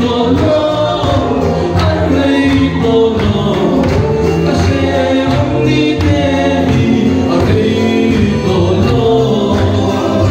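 A congregation singing a hymn together, with a Mizo khuang, a wooden cylinder drum beaten with a stick, keeping a steady beat under the voices.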